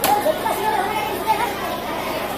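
Chatter of several people talking in the background.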